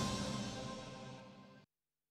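Closing theme music of a TV news bulletin, fading down and then cutting off suddenly about one and a half seconds in.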